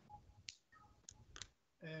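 Near silence with three or four faint, sharp clicks about half a second apart, then a man's brief 'é' just before the end.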